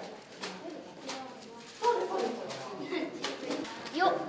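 Indistinct voices talking in a room, with scattered light clicks and knocks.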